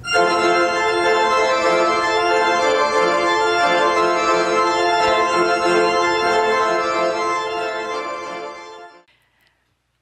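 Church pipe organ playing a loud, sustained chord that holds steady for most of the time and fades away about nine seconds in.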